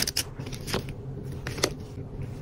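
A stack of small paper cards handled by hand, flipped and picked up, giving about three sharp clicks over light rustling.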